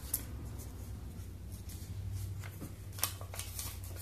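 Faint scattered clicks and taps of a small plastic doll being handled in and against a glass bowl of water, over a low steady hum.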